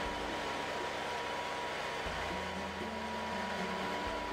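Portable band sawmill running steadily as its blade cuts along a log.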